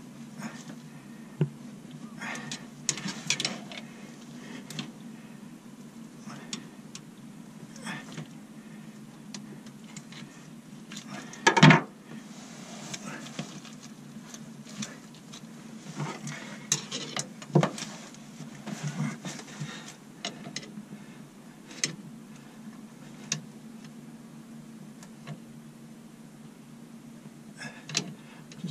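Scattered metallic clinks and knocks of a screwdriver and gloved hands working against a narrowboat's stern gland and propeller shaft as packing rope is pushed into the gland, with one loud knock about twelve seconds in, over a low steady hum.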